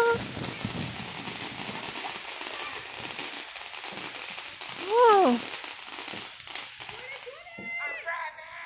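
Firecrackers crackling in a dense, continuous rattle that dies away about seven seconds in. Near the middle a person lets out a loud, falling whoop, the loudest sound here.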